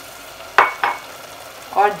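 Curry with freshly added water cooking in an open pressure cooker, giving a steady sizzle, broken about half a second in by two quick metallic clinks of a spoon against the pot.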